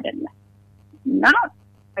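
Talk from a recorded radio interview: a phrase ends, a short pause, then one short loud vocal exclamation about a second in, over a low steady hum.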